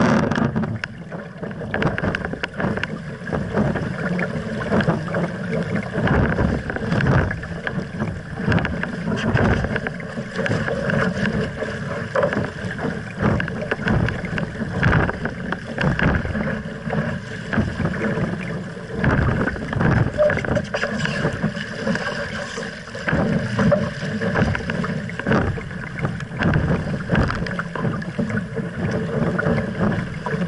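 Water rushing and splashing along the hull of an RS Aero sailing dinghy under way, with wind buffeting the microphone. The loudness rises and falls unevenly with the gusts and waves.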